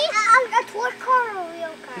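Young children's high voices chattering and calling out while they play.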